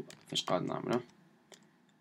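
A man's voice speaking briefly, then quiet with a single faint click about a second and a half in.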